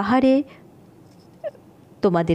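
A woman's voice speaking, cut off about half a second in; then a quiet stretch with one short, faint high call about a second and a half in.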